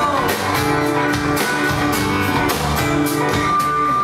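Live band music led by a strummed acoustic guitar, with a steady rhythm.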